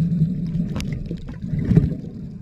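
Underwater sound on a snorkeler's camera: a steady low rumble of moving water, swelling at the start and again near the end, with scattered sharp clicks.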